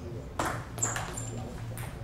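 Table tennis ball in play during a rally, a few sharp clicks as it is struck by the rackets and bounces on the table, spaced about half a second to a second apart.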